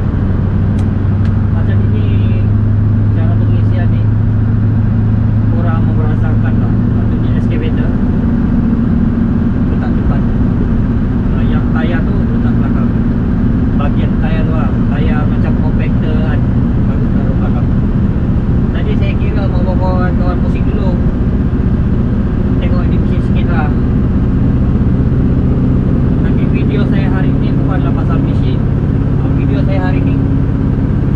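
Scania truck's diesel engine droning steadily inside the cab while driving on the road. Its note shifts in pitch about eight seconds in.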